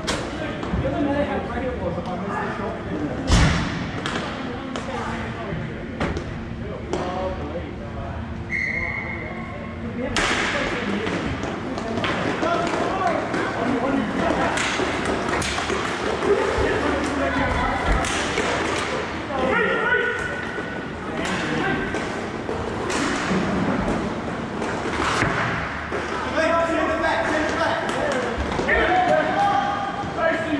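Hockey game sounds in a large hall: sticks and puck knocking and thudding against the floor and boards at irregular moments, mixed with players' shouts and calls.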